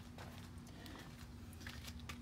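Faint background with a steady low hum and a few light clicks, from the phone being handled as it swings around.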